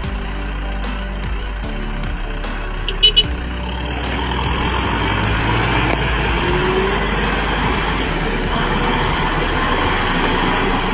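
Tractor engine working hard as its rear wheels spin in deep paddy mud, getting louder from about four seconds in as mud sprays off the tyre. Two short sharp sounds come about three seconds in, and background music plays throughout.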